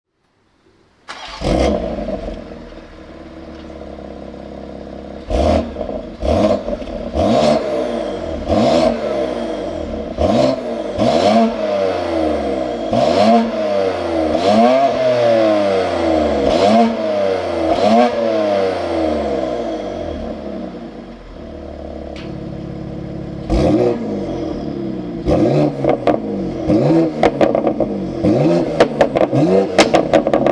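BMW X3M Competition's twin-turbo 3.0-litre inline-six, fitted with upgraded turbochargers, starts about a second in with a loud flare and settles to idle. It is then revved over and over in short blips, about one a second, with sharp cracks from the exhaust. About two-thirds of the way through it drops back to idle, then the revving picks up again faster near the end.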